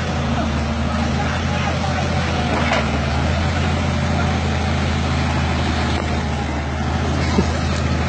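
Wheeled excavator's diesel engine running at a steady pitch.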